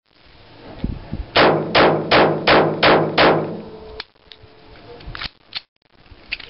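Jennings J22 .22 LR pistol fired six times in a steady string, about 0.4 s between shots, each crack followed by a short ringing tail. A few light metallic clicks of the gun being handled follow near the end.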